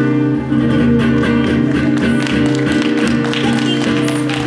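Archtop guitar strumming sustained chords, with a loud chord struck just as it begins and steady repeated strums after it.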